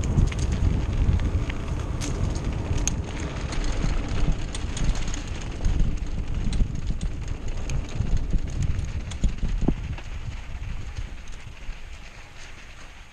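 Diamondback Hook mountain bike rolling fast down a dirt and sand trail: constant wind buffeting on the camera microphone under the crunch of the tyres, with scattered ticks and rattles from the bike over the rough ground. It eases off somewhat near the end.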